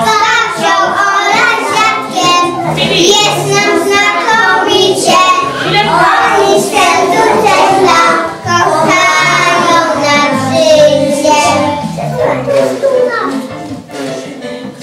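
A group of young preschool children singing a song together in unison; the singing thins out near the end.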